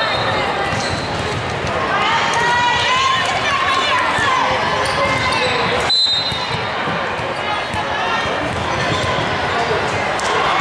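Many indistinct voices of volleyball players and spectators calling out and chattering in a large gym hall, with volleyballs bouncing on the hardwood floor. A brief high tone sounds about six seconds in.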